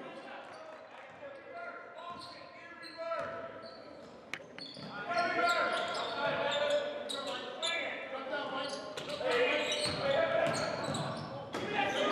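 Basketball game sound in a large gym: unintelligible voices of players and onlookers, with a basketball bouncing on the hardwood court and sharp impacts from about a third of the way in. The voices grow louder around the middle.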